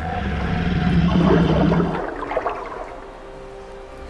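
Deep, drawn-out growl of a giant crocodile (film sound effect) over churning floodwater, loudest about a second in and dying away after about two seconds.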